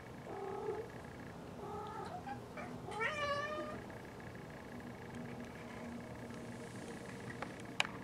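Siamese-type cat meowing three times, short calls rising to a longer, louder yowl that rises then falls in pitch. A couple of sharp clicks come near the end.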